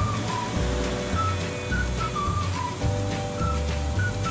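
Background music: a high melody of clear, whistle-like notes stepping downward over held chords and a pulsing bass line.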